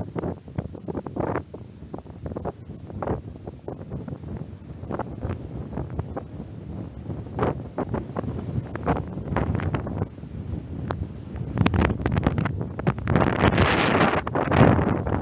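Wind buffeting the camera microphone in uneven gusts, growing louder and more continuous near the end.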